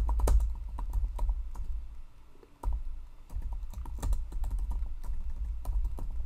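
Typing on a computer keyboard: a quick run of key clicks, with a short pause a little before halfway through.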